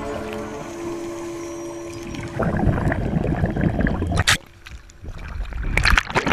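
Background music fades out, then loud rushing and splashing of water around the camera as it comes up through the sea surface, with a sharp splash a little after four seconds and more splashing near the end.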